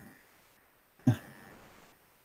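A brief throat sound from a person about a second in, otherwise quiet room tone.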